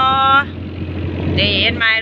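A longtail boat's engine runs with a steady low hum under a woman talking in Thai.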